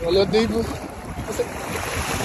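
Shallow sea surf washing around a person wading, a steady noisy wash of water. A voice is heard briefly near the start.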